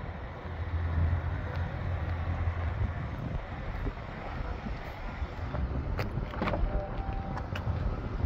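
A low steady rumble. About six seconds in come a few sharp clicks, then a short faint tone, as the passenger door of a 2021 Dodge Challenger is opened.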